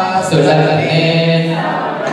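Several voices chanting a devotional chant together, unaccompanied, in long held notes that change pitch after a short break near the start.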